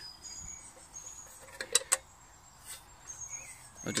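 Two sharp clicks a moment apart, just under two seconds in, and a smaller one a second later, as the aluminium British army mess tin is handled. Faint high chirps sound in the background.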